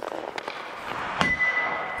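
Ice rink sounds: a hiss of skates scraping the ice building up, then a sharp hit a little past a second in with a brief steady ringing tone after it.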